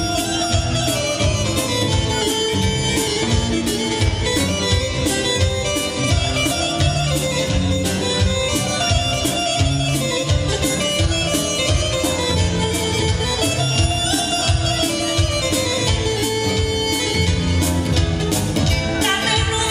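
Live band playing an instrumental passage of a folk dance tune for a circle dance, with a steady drum beat under a melody line.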